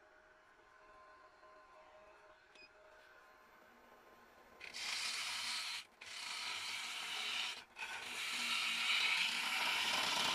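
A few seconds of near silence, then a bowl gouge cutting into spalted birch spinning on a lathe at about 1100 RPM: a steady hiss of wood being cut away as the bowl is hollowed, broken twice by brief pauses.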